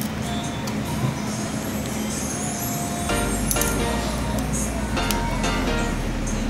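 Background music, with a low rumble that comes in about three seconds in and a few light clicks.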